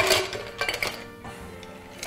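Ice cubes clattering as a scoop digs into a container of ice, loudest at the start, with a few sharp clinks a little under a second in. Background music plays underneath.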